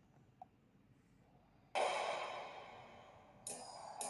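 A faint click, then the soundtrack of an animated cartoon starting suddenly through a tablet's small speaker about two seconds in: a loud, bright chord that fades over about a second and a half, and a second sound comes in just before the music gets going near the end.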